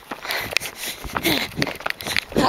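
Someone running over grass while holding a phone. Quick, irregular knocks and rubbing from the jolting phone and the footfalls, with breathy noise in between.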